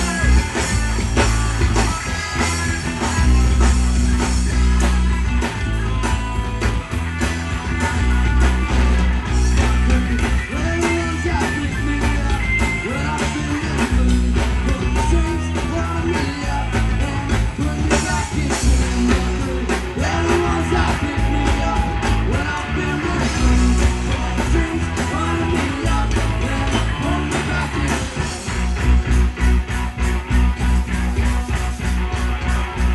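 Live rock band playing a song: guitars, bass guitar and drum kit, with a male lead singer.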